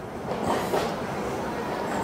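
Steady background noise of a workshop: an even rumble and hiss with no distinct knocks or tones.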